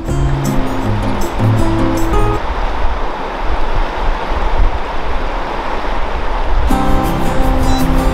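Background music stops about two seconds in, leaving the steady rush of a fast-flowing river for about four seconds, and then the music comes back near the end.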